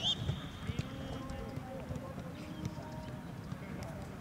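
Footballs being kicked on a grass training pitch: a few irregular dull thumps of boot on ball, most of them in the first second, with indistinct players' voices in the background.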